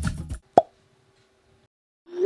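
Drum music cuts off abruptly just after the start, followed about half a second in by a single short pop, a video-editing sound effect.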